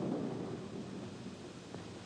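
Steady rumble of a moving elevator car, easing off slightly near the end.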